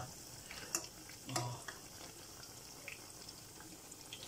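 Akara (bean fritters) deep-frying in hot oil in a small pot: a faint, steady sizzle, with a few light clicks in the first second and a half.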